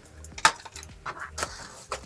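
Steel hemostats handled and set down on a cutting mat: a few light metallic clicks and clinks, the sharpest about half a second in.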